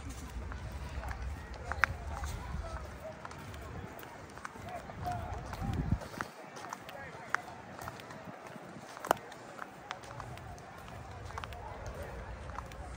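Footsteps of a person running outdoors, with a low rumble on the microphone that drops away about halfway through. A few sharp knocks and faint distant voices come through.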